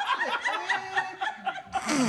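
A person laughing in a quick run of short, high-pitched snickers.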